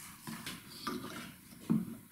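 Faint handling noises from working on a Shaper Origin handheld CNC router at a wooden bench: a few soft clicks and rubs, with a slightly louder knock near the end.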